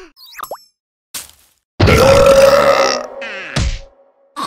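Cartoon sound effects and wordless character voices: quick sliding squeaks at the start, then a loud held voice-like sound lasting about a second from about two seconds in, and a thump near the end.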